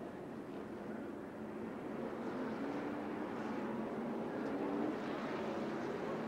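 NASCAR Truck Series race trucks' V8 engines running at low speed under caution, growing louder as they come by, with a slowly rising engine note.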